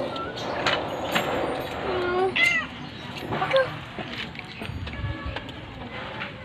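A stray cat meowing, with short arched meows a little over two seconds in and again about a second later.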